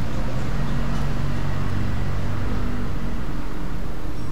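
A steady low mechanical hum with a faint noise haze, unchanging throughout.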